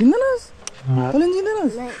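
A person's voice yelling in drawn-out calls that rise and fall in pitch, several in a row, the last two short, starting and stopping abruptly.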